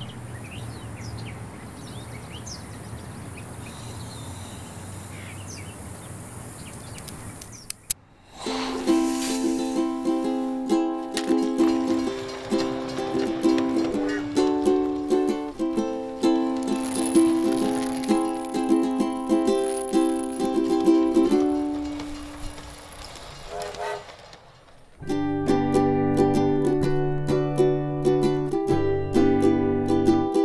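Birds chirping over a steady background hiss for the first seven seconds or so. Then a plucked-string instrumental intro starts, picking a repeating pattern of notes, fades out briefly, and comes back fuller with low notes added about 25 seconds in.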